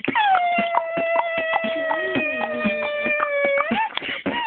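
Human beatboxing: a long, howl-like held vocal tone that glides down at the start and sweeps up near the end, sung over a steady, quick run of mouth-percussion clicks.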